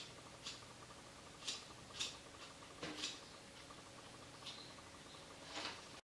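Hair-cutting scissors snipping through a section of long, thick hair: about seven short, crisp cuts, irregularly spaced and quiet.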